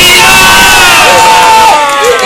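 A small crowd of team-mates and spectators in a darts hall cheering and yelling as the match is won. The cheering starts suddenly and stays very loud, with several voices shouting at once.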